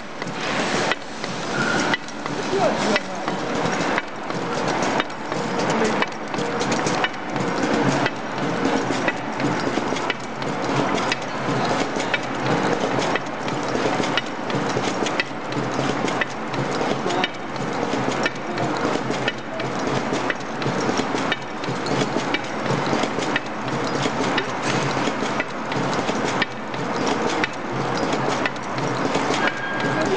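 Aluminium tube filling and sealing machine running: a quick, steady series of metallic clacks and knocks from the indexing turntable and sealing stations over continuous mechanical running noise.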